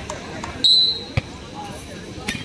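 A volleyball smacked during a rally, a few sharp hits with the loudest just after a second in. About half a second in, a referee's whistle gives one short, high blast, ending the rally.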